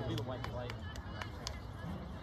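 Indistinct chatter of nearby spectators at an outdoor soccer game, with a few faint sharp taps and a steady low rumble underneath.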